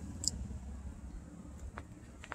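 Faint footsteps on pavement over a low steady background rumble, with a small click about a quarter second in and a few soft ticks near the end.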